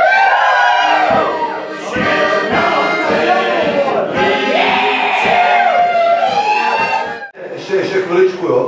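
Several voices singing a song together, loudly, over a beat of short low knocks. The singing breaks off abruptly near the end.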